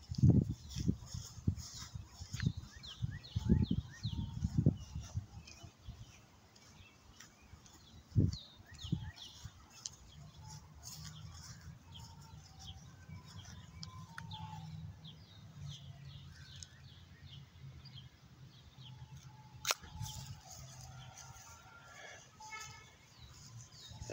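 Birds chirping throughout, over low thumps and rustling of walking and handling in the first few seconds and one louder thump about eight seconds in. In the second half a faint, distant ice cream truck jingle plays over a steady low hum.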